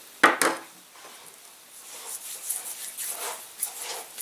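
Hand handling at a wooden table: two sharp knocks about a quarter second in as a pair of wire cutters and a grease tube are set down, then soft rubbing and light ticks as fingers work silicone grease onto a rubber motor loop.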